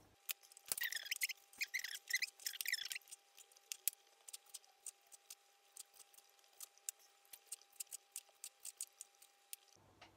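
Kitchen knife cutting cherry tomatoes on a wooden chopping board. For the first few seconds there is scratchy scraping and cutting, then a run of quick, uneven taps of the blade on the board.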